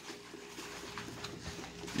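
Faint, irregular rubbing of a soapy kitchen sponge scrubbing the skin of a whole raw chicken.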